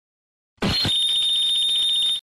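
A single gunshot about half a second in, followed at once by a steady, high-pitched ringing tone.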